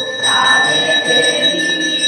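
Hindu temple bells ringing continuously for aarti, a steady metallic ring held at the same pitches throughout.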